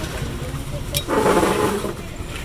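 Busy market background noise: a steady low rumble, a sharp click about a second in, then a short stretch of muffled voices.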